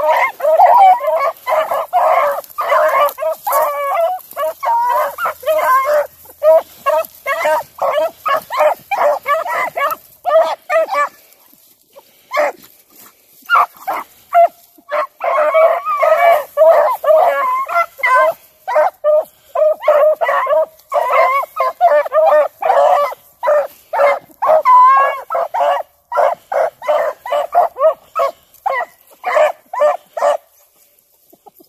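A pack of beagles baying almost continuously as they work a scent trail through brush, several voices overlapping in quick yelps and bays. The calls thin out for a few seconds partway through, then the pack picks up again.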